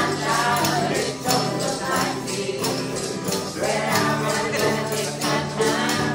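Acoustic guitar and banjo strumming a steady beat while a small group of mixed voices sings together.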